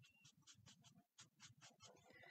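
Faint scratching of a Stampin' Blends alcohol marker on paper, dabbed in short, quick strokes at about five a second.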